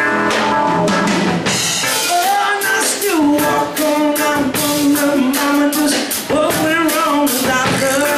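Live rock band playing: a drum kit keeps a steady beat under a held, wavering melody line.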